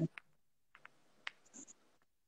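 A few faint, scattered clicks and light rubbing from a phone being handled in the hands.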